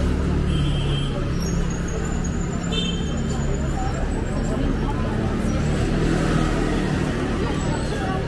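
Busy pedestrian street ambience: passers-by talking over a steady low hum of a running vehicle engine, with a few brief high chirps.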